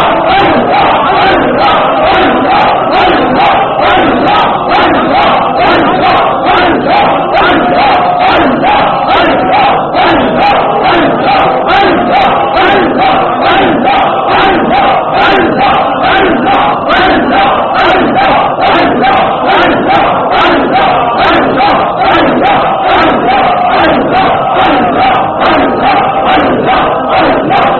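A large gathering of men chanting loudly together in a fast, even rhythm, about two to three repeated phrases a second: collective dhikr, the congregation's unison remembrance of God.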